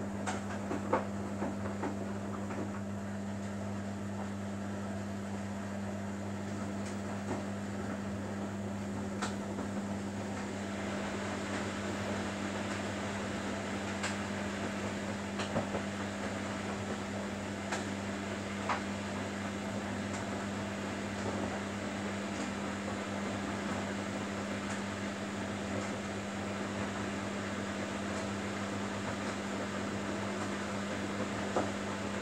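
Samsung Bespoke AI WW11BB704DGW front-loading washing machine in its wash phase: the inverter motor turns the drum with a steady hum while the wet laundry tumbles and swishes inside, with occasional faint light clicks. The swishing gets a little fuller about ten seconds in.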